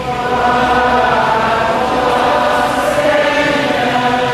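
A choir singing a slow liturgical chant in long held notes.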